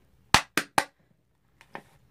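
Three sharp knocks in quick succession, about a quarter second apart, from a plastic jar of Coty Airspun loose powder being handled on a hard surface, followed near the end by a couple of fainter clicks.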